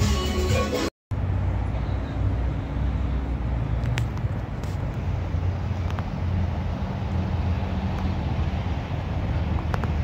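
Outdoor city ambience: a steady low rumble of road traffic with a few faint clicks, after about a second of music that cuts off abruptly.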